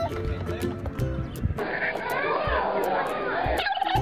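Background music with a steady beat. From about a second and a half in, wavering voices are heard over the music.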